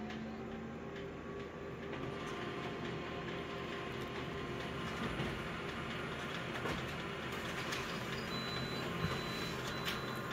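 Office multifunction copier running a full-colour copy job: steady mechanical whirring with a few small clicks, a little louder from about two seconds in, and a thin high whine joining near the end as the page feeds out into the output tray.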